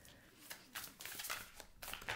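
A deck of large oracle cards shuffled by hand: faint papery sliding and flicking of the cards in short, irregular strokes.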